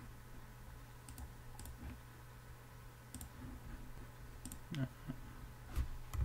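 Faint, scattered clicks of a computer mouse, about seven over a few seconds, over a steady low hum from the recording.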